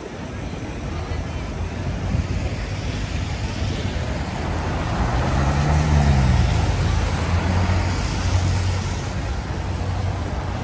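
Traffic on a wet city street: a car passes close by around the middle, its tyre hiss on the wet road and engine hum swelling and then fading, over a steady low rumble of other traffic.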